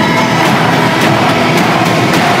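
Loud, dense film-trailer sound design: a continuous noisy rumble of battle effects, with faint held tones of the score beneath.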